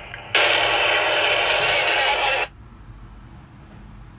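Two-way radio (walkie-talkie) giving a burst of static for about two seconds, starting and cutting off abruptly, over a faint steady low hum.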